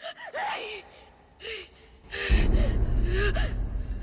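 Short, breathy gasps of shock. A deep low rumble starts a little over two seconds in and carries on under them.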